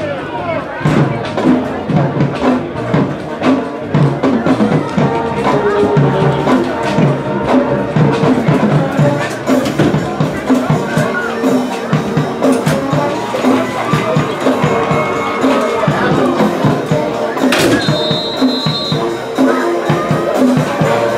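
Marching band playing in the stands, drums keeping a steady beat under held brass notes, over crowd noise.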